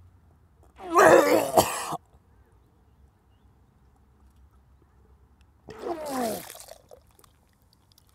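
A man retching twice as he vomits into a bowl: a loud heave about a second in, and a second one near six seconds with his voice sliding down in pitch.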